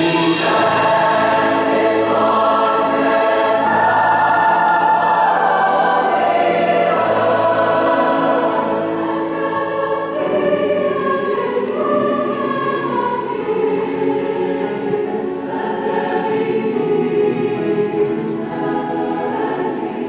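Large mixed choir of male and female voices singing a slow, sustained choral passage, accompanied by piano and cello.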